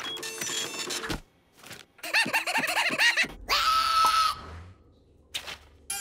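Cartoon sound effects and a cartoon character's wordless voice: a quick run of rising-and-falling chattering syllables about two seconds in, then a held shrill cry about a second long. Short effect sounds come before it and a single click near the end.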